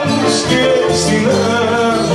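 Live Greek band music: a bouzouki and a guitar playing together, with brighter accents recurring about every half second.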